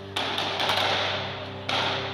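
A sudden loud, echoing noisy burst with several sharp cracks in quick succession in the first second, then a second loud burst near the end, over a held-note music underscore.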